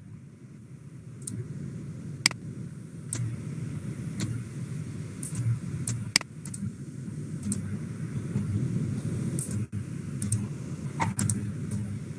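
Steady low background rumble with a dozen or more scattered sharp clicks, mouse clicks from a computer being operated.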